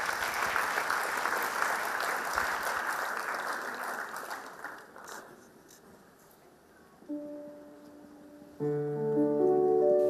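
Audience applause that fades out over the first five seconds. After a short hush, a keyboard starts holding a sustained chord about seven seconds in, and more notes join it near the end, opening a slow song.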